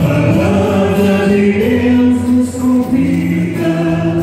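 Church choir singing a devotional hymn with musical accompaniment, holding long notes that move step by step from one pitch to the next.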